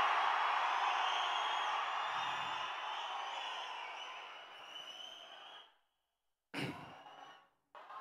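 Large audience cheering, dying away gradually over about five seconds, then cut off abruptly.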